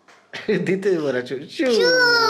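A young boy's high-pitched voice, gliding up and down in pitch with a meow-like whine, ending in a long drawn-out note near the end.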